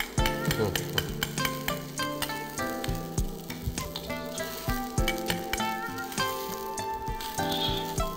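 Water boiling in a steel wok, with a metal ladle and mesh strainer clinking against the pan as blanched pork fat is scooped out, over background music with sustained notes.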